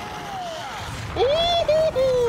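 A person's voice shouting a high, drawn-out cheer. It starts about a second in, rises, holds, then slides down in pitch; a fainter call comes before it.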